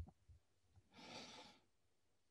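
Near silence broken by one faint breath from the lecturer, about a second in and lasting about half a second.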